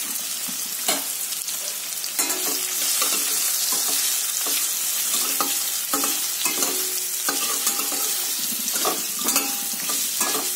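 Strips of pumpkin frying in oil in a stainless-steel kadai with a steady sizzle. From about two seconds in, a spatula scrapes and knocks against the steel pan again and again as the strips are stirred.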